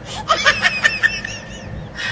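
A person giggling in a quick run of short, high-pitched bursts, then tailing off after about a second.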